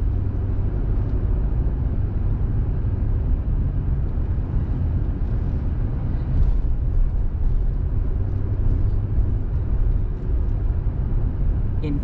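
Steady low rumble of a car's engine and tyres heard from inside the cabin while driving along a town street.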